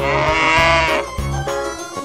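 A cow moos once, one call lasting about the first second, over the instrumental backing of a children's song.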